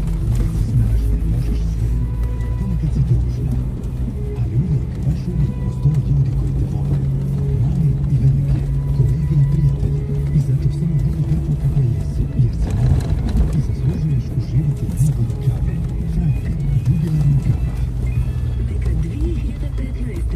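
Jeep engine running at low speed, a steady low rumble in the cabin as it drives over a rough dirt track. Music with a singing voice plays over it.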